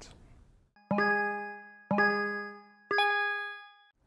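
Three electronic chime notes, one a second, each struck and then ringing away, the third pitched a little higher than the first two: a countdown cue leading into a 90-second timer.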